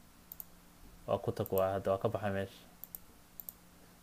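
Computer mouse clicking: two quick clicks near the start and a handful more near the end, with a few spoken words in between.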